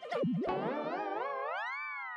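Comic sound-effect sting: a wavering tone that slides upward in pitch for about a second and a half, then levels off.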